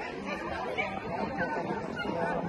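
People chatting, with indistinct voices talking.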